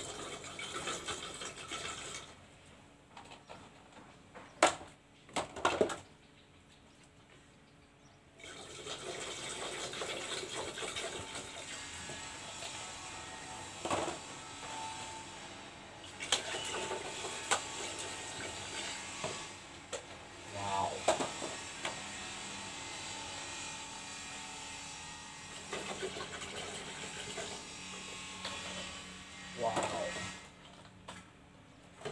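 Bottled drinks poured in a steady stream into a large plastic jar of mixed drinks, liquid splashing into liquid. The pouring stops for several seconds about two seconds in, with two sharp clicks, then runs on steadily to the end.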